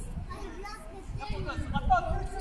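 Several children's voices shouting and calling out at once across an outdoor football pitch, louder in the second half.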